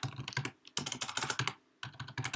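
Computer keyboard typing: quick runs of keystrokes, broken by a short pause about a quarter of the way in and another near the end.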